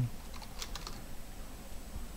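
Computer keyboard typing: a short run of keystrokes clustered in the first half, finishing a word.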